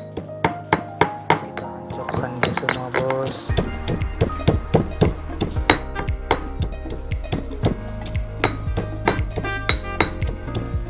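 Background music, with a deeper bass line coming in about a third of the way through, over repeated sharp knocks of a stone pestle pounding shallots, garlic and ginger in a granite mortar, two to three strikes a second.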